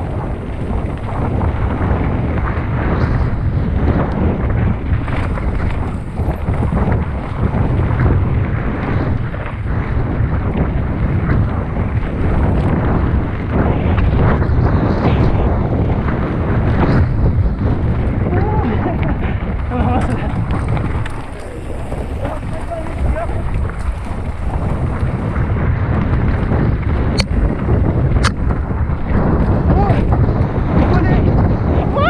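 Wind buffeting the microphone over a steady low rumble during a mountain-bike ride, with faint voices in the mix; two sharp clicks near the end.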